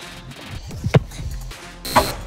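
A football is kicked hard about a second in, a single sharp thud, over background music. A second knock comes near the end as the ball strikes a target board on the goal.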